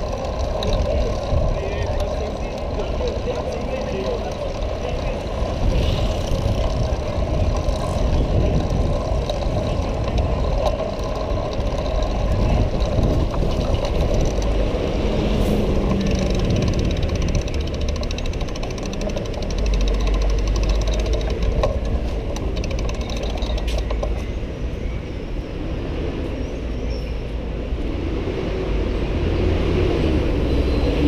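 Steady low rumble of a bicycle rolling over stone paving, heard through a camera mounted on the bike, with a constant patter of small rattles. City street noise runs underneath.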